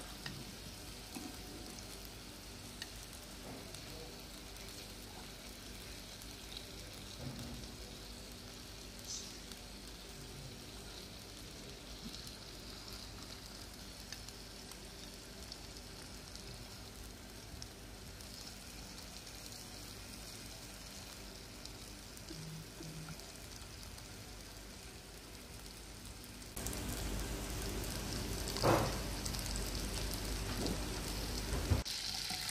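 Fish pieces sizzling as they fry in hot oil in a nonstick frying pan, a steady faint crackle. The sizzle grows louder about four seconds before the end.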